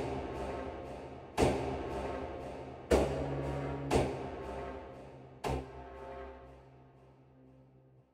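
Sampled sound-design patch, the 'Stuck Stacks' preset layering a tremolo pad, a celesta-like voice and a pad, played on a keyboard. Five struck chords come about one to one and a half seconds apart, each with a sharp attack and a long ringing decay. The last fades away near the end.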